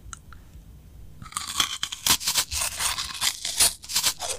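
ASMR eating: teeth biting into and crunching a brittle white Hello Kitty-shaped edible treat, a dense run of crisp crunches starting about a second in after a few faint clicks.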